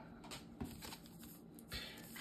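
Faint flicks and rustles of Pokémon trading cards being handled and sorted, a little louder near the end.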